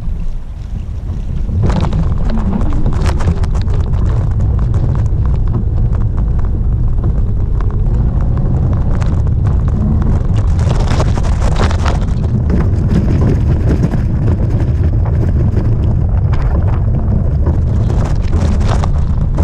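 Steady wind buffeting on the microphone while a bike rides a rough gravel and dirt trail, with scattered knocks and rattles from the bumps.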